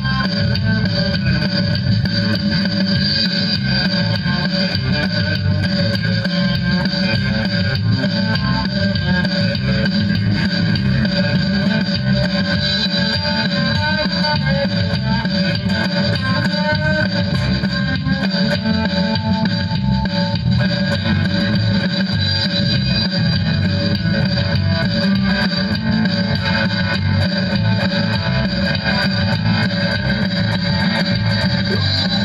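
Multitrack recording of electric guitar with an added bass line and drums, played back on a Boss Micro BR-80 digital recorder and heard through a Boss guitar amplifier. The music runs on without a break, the bass strong under the guitar.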